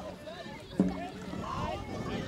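Dragon boat drum struck once about a second in, a sharp booming hit with a short ring, part of a slow beat about one and a half seconds apart, over a crew's voices.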